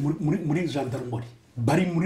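A man speaking in an interview, with a brief pause about three-quarters of the way through.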